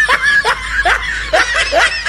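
Laughter: a run of short snickering chuckles, about five in two seconds.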